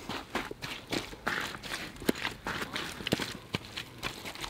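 Wellington boots treading and stamping on wet heavy clay in quick, irregular steps, a few a second: the clay being puddled in, packed down into a solid, watertight dam.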